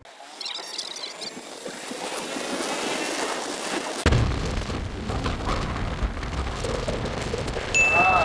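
Suzuki X-Bike 125 underbone motorcycle being ridden, its engine and the wind making a steady, rising hiss at first. About four seconds in, heavy wind rumble on the microphone sets in and stays loud.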